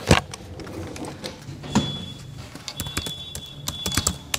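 Irregular clicks and knocks with some rustling, the loudest knock just after the start, and a faint thin high tone in the background during the second half.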